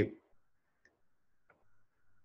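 Two faint computer-mouse clicks, a little under a second in and again at about one and a half seconds, over near-silent room tone.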